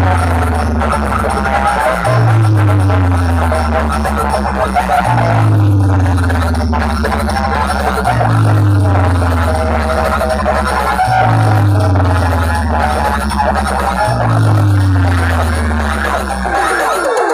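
Very loud music from a DJ sound-box speaker rig, driven by a deep bass tone that slides downward and restarts about every three seconds, with busier music above it.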